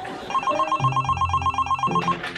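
Telephone ringing: a rapid electronic trill, about ten pulses a second, that starts a moment in and keeps going.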